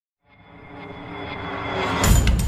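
A swelling intro sound effect fading in from silence and growing steadily louder, with a few steady tones held through it, building into the opening music.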